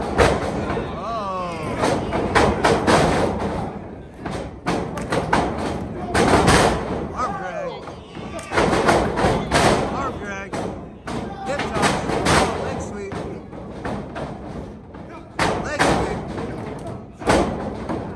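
Wrestlers' bodies hitting a wrestling ring's canvas mat: a string of heavy thuds, the loudest right at the start, with people in the crowd shouting over them.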